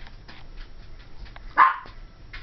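A Pomeranian puppy gives one short, sharp bark about one and a half seconds in.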